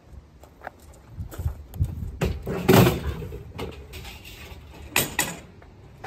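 Hollow knocks and clatter from a plastic laundry sink being carried and handled, with a longer, louder scraping knock about three seconds in and two sharp knocks near the end.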